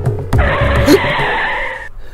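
A tyre-screech sound effect starts about a third of a second in, lasts about a second and a half and cuts off suddenly. It comes in as percussive background music with tabla-like beats gives way.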